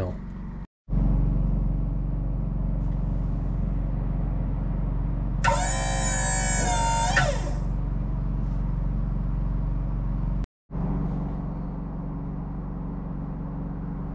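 Wood-Mizer LT40 sawmill running with a steady low hum. From about five and a half to seven seconds a loud, high-pitched whine with many overtones joins in as a hydraulic lever is worked to lower the rear deck roller.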